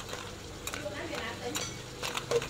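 A metal spatula scrapes and clacks against a steel wok as crabs are stir-fried, with irregular strokes over the sizzle of the pan.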